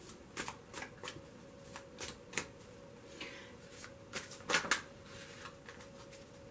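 A tarot deck being shuffled and handled: a scatter of short, soft card clicks at uneven intervals, the loudest cluster about four and a half seconds in.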